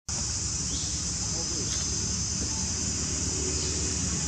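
Steady high-pitched insect chorus that keeps up throughout.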